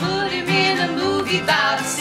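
A small acoustic country band playing live: a woman singing over acoustic guitar, mandolin and upright bass.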